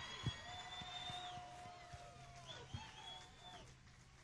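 Faint audience applause with a few whistles, thinning out, heard only faintly through the stage soundboard feed over a steady low electrical hum.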